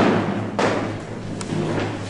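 A heavy thud about half a second in that dies away slowly, then a light tap, over a low steady hum.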